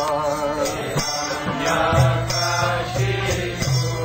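A man singing a devotional mantra chant into a microphone, with instrumental accompaniment. A low note is held from about two seconds in until near the end.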